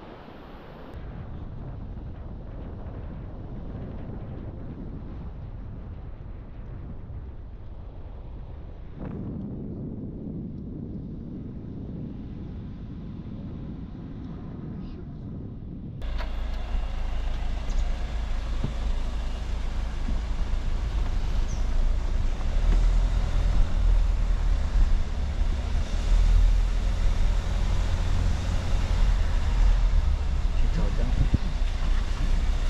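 A car driving, heard from inside: steady engine and tyre rumble. About halfway through it abruptly gets louder, with a heavier low rumble.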